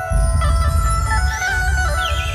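Dhumal band music over a loud sound system: a lead melody held on long notes, with a heavy bass beat coming in just after the start.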